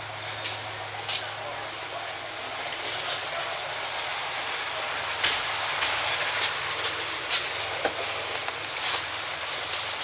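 Steady hissing background noise with a faint low hum, broken by scattered sharp clicks and knocks as a car's driver door is handled and someone leans into the seat.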